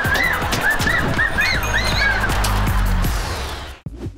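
Two girls squealing in a rapid series of short, high-pitched excited shrieks over upbeat sitcom music; the squeals stop about two seconds in, and the music cuts off just before the end.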